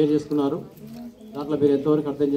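A man's voice speaking into a microphone and amplified over a public-address loudspeaker, in short phrases with a brief pause about a second in.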